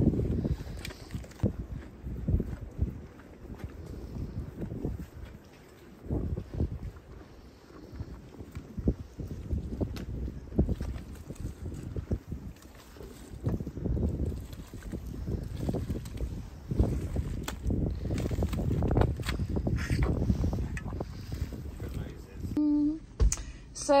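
Gusty wind buffeting the microphone in uneven swells, with splashing and scraping from a spade cutting a drainage channel through waterlogged mud in the first half.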